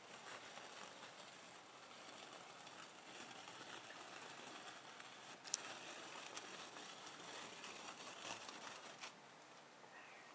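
Multi-blade rolling cutter, a row of circular metal blades on a shaft, rolled through a slab of set Fruity Pebble milk chocolate bark: a faint, steady crackling crunch as the blades cut the chocolate and cereal. One sharp snap comes about halfway through, and the crunching stops about a second before the end.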